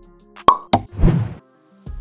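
Edited-in sound effects for an animated end title: two sharp pops in quick succession, then a short noisy burst. Background music comes back in near the end.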